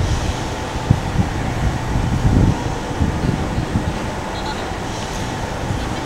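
Street noise: a steady low rumble of passing traffic, with wind buffeting the microphone and a sharp bump about a second in.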